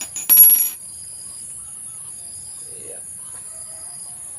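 A small steel hex key set down on a ceramic tile floor gives one sharp, ringing metallic clink about a third of a second in.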